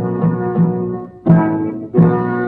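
Cartoon background music: a held chord over repeated low notes at about three a second, with a louder accent a little past the middle.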